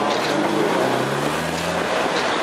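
1908 GWR steam rail motor running along the track: a steady rumble and hiss, with a low hum that rises a little in pitch in the second half.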